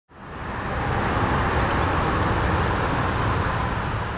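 Steady road traffic noise from passing vehicles on a highway, fading in at the start.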